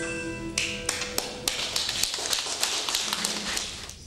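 A short round of applause from a small audience, starting about half a second in and dying away near the end, over the last held note of the song's accompaniment.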